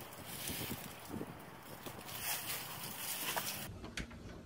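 Faint, steady outdoor background noise, with a few soft clicks and taps. Near the end it cuts to quieter indoor room tone.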